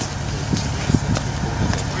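A car engine idling: a steady low rumble, with a few light knocks over it.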